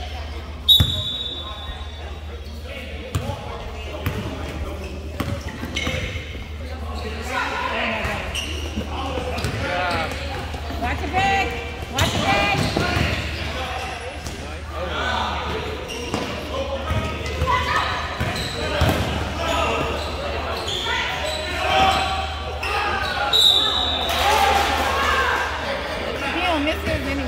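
Indoor youth basketball game in a gym: the ball bouncing on the hardwood and knocking among players, with indistinct shouting from players and spectators over a steady low hum. A referee's whistle sounds briefly just under a second in and again shortly before the end, when play stops.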